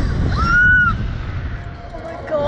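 A rider's short high-pitched scream about half a second in, rising then falling away, over steady wind rushing on the microphone as the slingshot ride capsule swings through the air.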